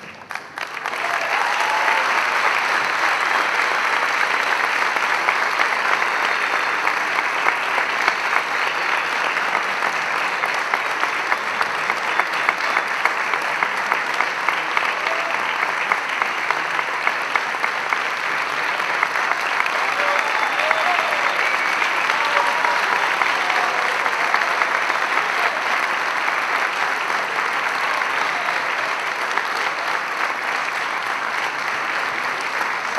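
Large audience applauding steadily, a dense sustained clapping, with a few voices calling out over it.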